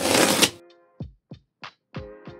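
Packing tape torn off a cardboard box in a brief burst of noise lasting about half a second. Then background music with quick falling synth notes about three a second over a held tone.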